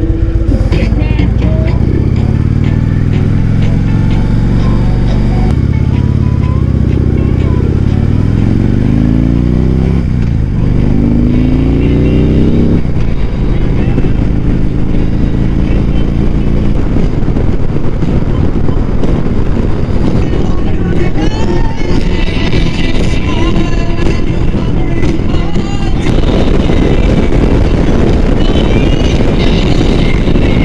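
Touring motorcycle engine pulling away from a standstill. It idles for the first few seconds, then revs rise through the gears with shifts at about ten and thirteen seconds, before it settles into steady running at road speed with wind noise on the microphone.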